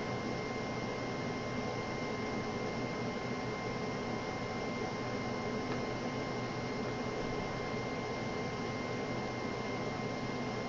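Steady background hiss with a thin, constant high whine running through it; nothing starts, stops or changes.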